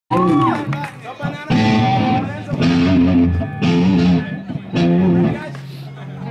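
Live rock band with an amplified electric guitar strumming chords in four loud passages broken by short pauses, with drum and cymbal hits. A single low note is held near the end.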